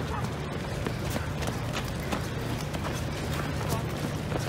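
Running footsteps on paving, an even beat of just under three steps a second, with the jolts of a camera carried by a runner.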